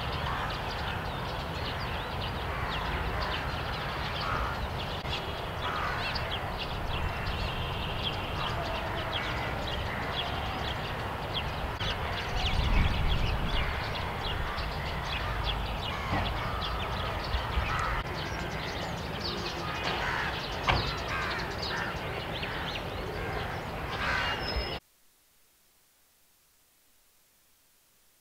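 Outdoor background sound: a steady low rumble with many short bird calls over it, crows cawing among them. The rumble swells briefly about halfway through, and the sound cuts off suddenly near the end.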